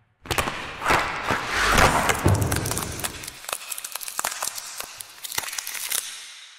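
Produced intro sound effect of cracking ice: a sudden hit and a rush of crackling, then separate sharp cracks that thin out and fade.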